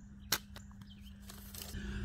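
A single short, sharp click from a metal folding chair frame about a third of a second in, as the chair is gripped and sat in, over a quiet background.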